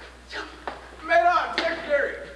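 A teenage boy's voice calling out wordlessly for most of a second, starting about a second in. A single sharp tap comes a little before it.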